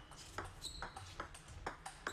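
Table tennis ball bounced on the table several times before a serve: a string of light, hollow clicks, some with a short high ping.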